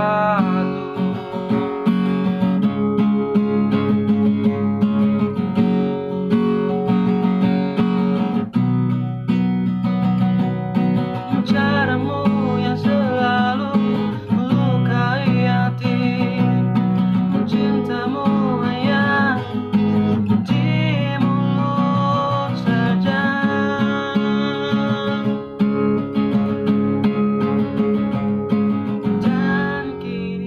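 A man singing to his own strummed acoustic guitar, the chords changing every few seconds.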